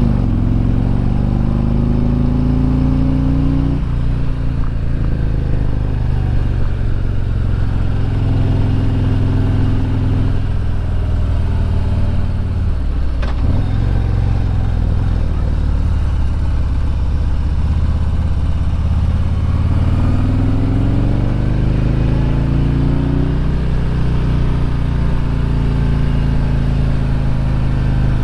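Harley-Davidson Road Glide's V-twin engine running under way, heard from the rider's seat. Its pitch rises and falls with the throttle through the curves, with a brief drop about halfway through and a clear climb in revs some twenty seconds in.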